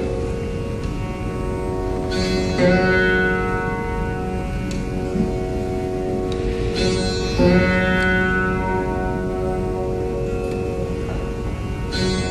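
Rudra veena playing a slow Dhrupad alaap in raga Jaijaiwanti: long, sustained string notes, with a fresh pluck about two and a half seconds in and another about seven and a half seconds in, each note gliding in pitch as the string is pulled (meend).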